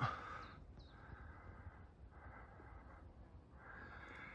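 A hiker's faint, heavy breathing from the effort of a steep climb: soft puffs of breath about every second and a half.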